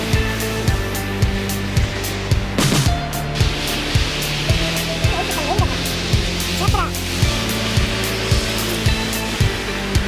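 Background music with a steady beat and bass line; about three seconds in, a steady rushing hiss joins it.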